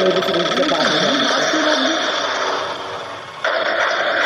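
Hindi film soundtrack playing: a man's voice over a steady hiss-like background, which fades a little, then jumps back louder near the end.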